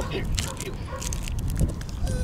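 Crinkling and crackling of a lollipop's plastic wrapper being handled, a run of small sharp clicks, over a low wind rumble on the microphone.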